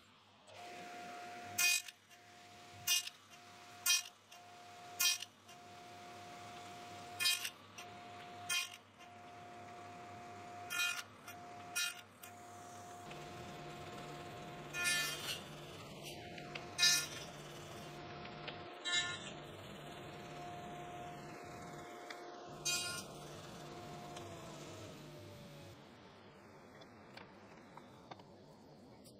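A table saw fitted with a dado stack runs at a steady tone while a box-joint jig is pushed through it again and again. About a dozen short cuts are heard, each briefly pulling the tone down. Near the end the saw is switched off and its tone falls away as the blade winds down.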